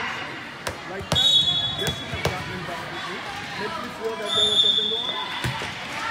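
A volleyball bounced on the hard court floor a few times and then struck for a serve near the end, with two short referee's whistle blasts, the second just before the serve, over the chatter of people in the hall.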